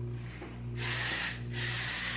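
Hair shine spray hissing out of its nozzle in two bursts of well under a second each, about halfway through and again near the end.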